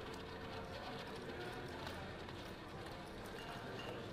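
Casino table ambience: indistinct background chatter with light clicking of roulette chips as the dealer handles them on the layout.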